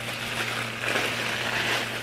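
Plastic mailer bag and tissue paper crinkling and rustling as they are handled and opened, a continuous rustle without clear pauses.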